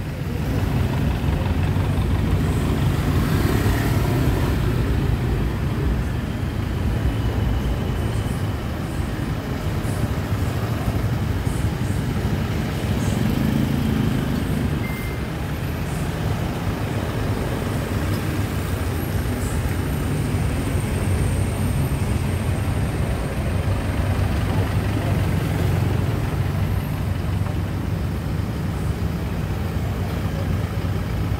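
A songthaew pickup-truck taxi's engine running with a steady low rumble, heard from its open rear bench as it moves slowly in city traffic. The noise of surrounding road traffic is mixed in.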